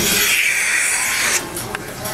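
Vacuum milking unit's teat cups hissing as they draw in air while being put on a cow's teats. The hiss cuts off suddenly about a second and a half in.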